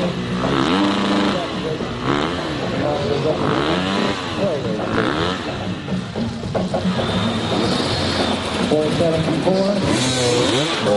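Enduro dirt bike engines revving in repeated short blips over an idle, the pitch rising and falling about once a second as the riders work over the logs.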